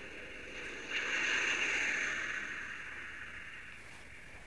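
A rushing whoosh of air from Space Shuttle Atlantis gliding unpowered at about 320 mph on final approach. It swells about a second in and slowly fades, and is heard through a phone's speaker.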